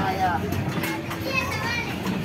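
Young children's high voices calling out and chattering as they play, over a steady background din with music.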